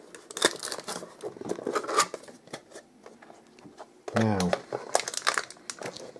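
A hard-drive retail box being opened by hand: crinkling and tearing of the packaging, with many irregular sharp rustles and clicks.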